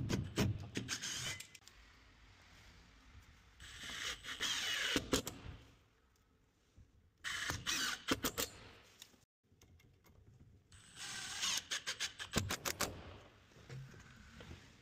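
Milwaukee cordless impact driver driving screws into a wooden door to fix a steel security bar, in four short bursts of rapid clicking over the motor's whine, with quieter pauses between them.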